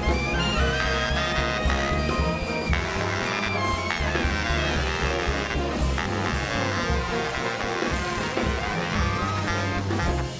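A jazz big band playing a tune together: saxophone, trombone and trumpet sections sounding over upright bass.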